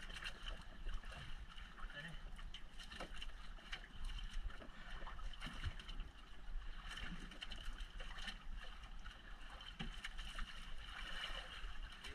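Water sloshing and splashing against the hull and outriggers of a small outrigger boat at sea, a steady wash with scattered small splashes, over a low rumble of wind on the microphone.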